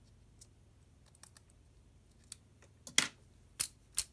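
Small clicks and taps of a screwdriver and hands on a plastic and metal toy sonic screwdriver while working at its screws: a few faint ticks, then three sharp clicks in the last second.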